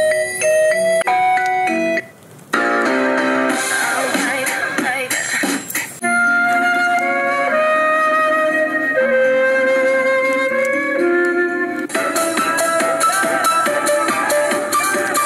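Built-in songs played through the Goplus electric scooter's audio system: short electronic melodies that are switched from one tune to the next, with a brief break about two seconds in and new tunes starting around six seconds and again near the end.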